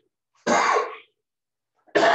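A man sneezing loudly about half a second in, then starting a second burst just before the end.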